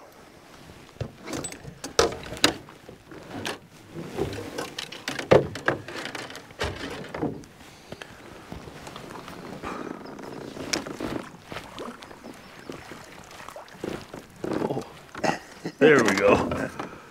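Scattered knocks and splashes from a hooked walleye being played at the side of a canoe, with low voices in between.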